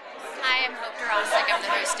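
Speech: a woman talking close to the microphone.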